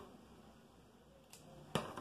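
Quiet room tone, broken near the end by two brief faint clicks, the second a little louder.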